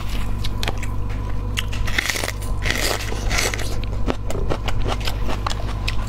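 Close-miked eating sounds: chewing and crunching with a quick string of small crackles and clicks, densest a couple of seconds in, over a steady low hum.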